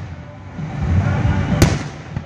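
Aerial fireworks display: one sharp bang from a shell bursting about one and a half seconds in, over a steady low rumble.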